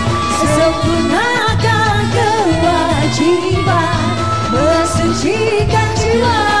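Two women singing a song together to live band accompaniment, with hand drums among the instruments.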